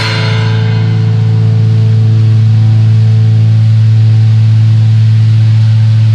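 The final chord of a rock song, held and ringing steadily and loudly with no drums over it, then cutting off abruptly at the very end.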